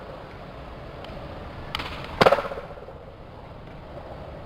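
Skateboard rolling on a hard court, with a light click and then a loud slap of the board a little over two seconds in.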